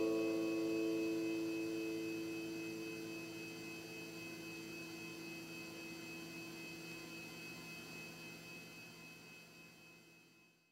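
A final chord on a nylon-string classical guitar ringing out and slowly dying away, its notes fading one after another over several seconds, above a faint steady hum.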